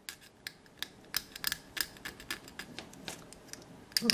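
A hobby knife blade scraping and cutting at a small plastic model engine part, a string of irregular sharp ticks and scrapes, several a second.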